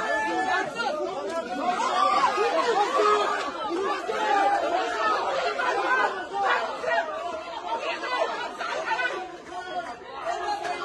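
A crowd of people talking over one another in dense, continuous chatter, with many voices at once.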